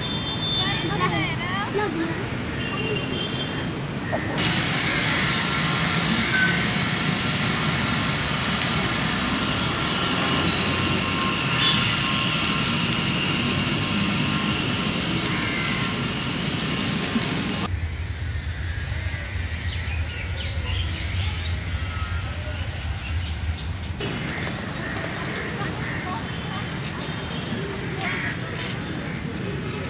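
Outdoor ambience that changes abruptly at several cuts: people's voices in the background with a steady rumble of the city. For several seconds past the middle there is mostly a low steady hum.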